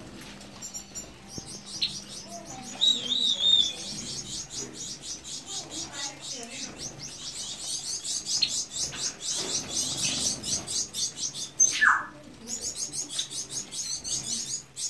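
Caged finches chirping in a rapid, continuous run of short high calls, with a wavering call about three seconds in and a loud falling call near the end.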